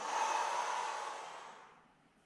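A woman's long exhale as she rolls down forward, a breathy hiss that fades away over about a second and a half.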